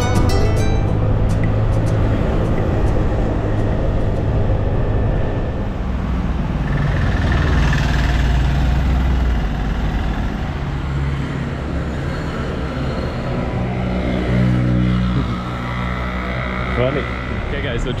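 Small motor scooter engine running steadily while riding, with wind and road noise.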